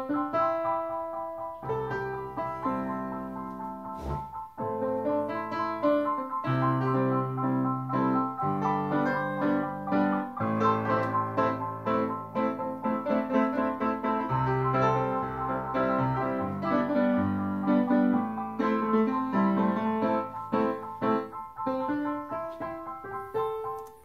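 Layered MIDI piano tracks played back from Cubase on a Kawai KDP-110 digital piano, several parts sounding at once with chords, melody and bass notes. There is a sharp click and a brief drop in the music about four seconds in.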